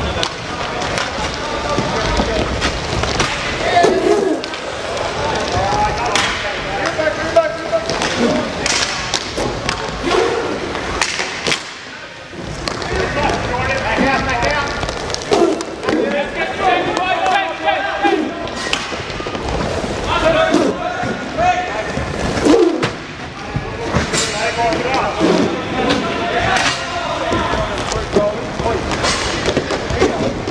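Inline hockey play on an arena court: voices calling and shouting, with sharp clacks of sticks and puck scattered through.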